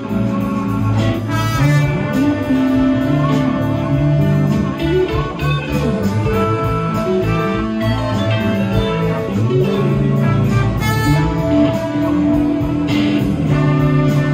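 Live blues band playing an instrumental passage: electric guitar, bass guitar and drums with saxophone and trumpet. Some notes bend in pitch over a steady cymbal beat.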